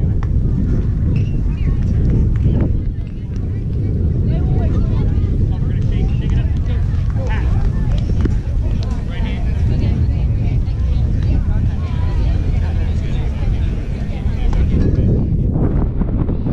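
Wind buffeting the microphone in a steady low rumble, with indistinct voices chattering in the background.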